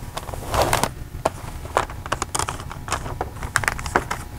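Wrapping paper crinkling and rustling in irregular crackles as it is folded and creased around the end of a gift box.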